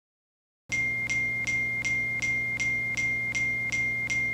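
A steady high electronic tone with evenly spaced clicking pulses, close to three a second, over a low steady hum. It starts suddenly under a second in.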